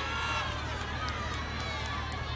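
Large crowd of many voices calling out at once, with no single voice standing out, over a steady low hum.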